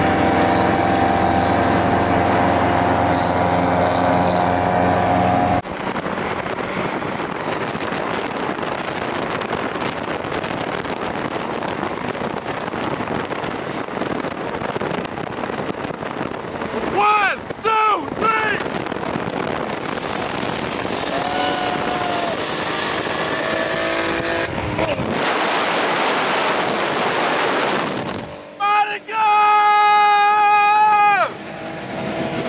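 Cars driving at speed: steady road and wind noise with engines running, and a strong steady engine drone in the first few seconds. A few brief high-pitched sounds that rise and fall come a little past halfway, and a loud pitched drone returns near the end.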